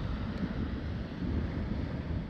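Wind buffeting the microphone: a steady, low, grainy rush with no distinct events.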